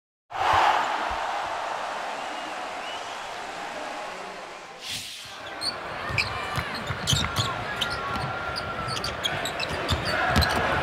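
Basketball arena sound: the hum of the crowd, and from about five seconds in, a basketball dribbled on the hardwood court, with low repeated thuds and short sneaker squeaks.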